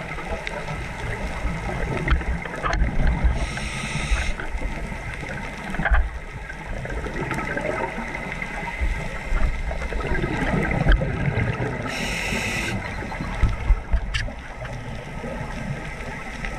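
Underwater sound of a scuba diver's breathing through the regulator: two short hissing inhalations about eight seconds apart, with the rumble and gurgle of exhaled bubbles between them. A few sharp clicks stand out.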